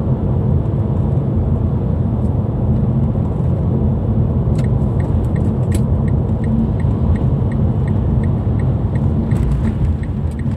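Steady low road and engine rumble inside a moving car's cabin. From about halfway through, an even light ticking joins it, about three clicks a second: the turn indicator, signalling for the roundabout ahead.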